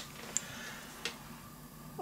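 Two faint ticks over a low steady hiss: a short sharp one about a third of a second in and a softer one about a second in.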